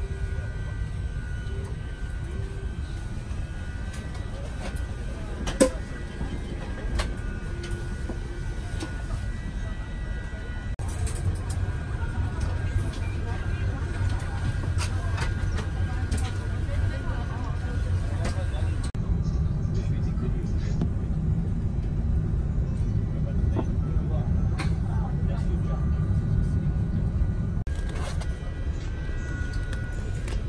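Airliner cabin ambience at the gate: a steady low rumble of air conditioning and ground systems, with indistinct voices and a few sharp clicks. The rumble grows heavier about two thirds of the way through.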